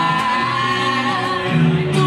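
Live band music: several women singing together in harmony, holding a long note, over acoustic and electric guitar.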